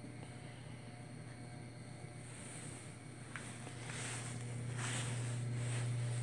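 A steady low mechanical hum, growing louder over the second half, with a few brief soft rustles about three to five seconds in.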